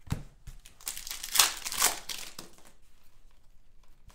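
Thin plastic trading-card pack wrapper crinkling while cards are handled. It comes as a run of irregular crinkles, loudest in a few sharp ones between one and two seconds in, then quieter.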